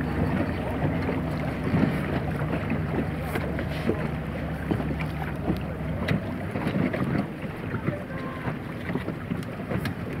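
Motorboat engine running at low speed, a steady low hum that weakens about halfway through, with water splashing against the hull and wind gusting on the microphone.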